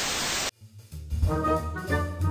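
A half-second burst of TV-static white noise as a video transition effect, cutting off abruptly. After a brief silence, music with sustained pitched tones comes in about a second in.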